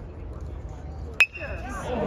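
A metal baseball bat hits a pitched ball once, a little over a second in: a sharp ping with a short ringing tone, over a low background rumble.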